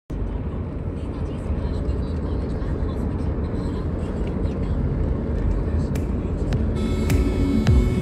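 Steady low rumble of a moving car's road noise, heard from inside the car. Music with high held tones and deep falling bass notes comes in near the end.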